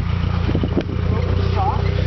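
Lifted Suzuki Samurai off-road rig's engine idling with a steady low rumble.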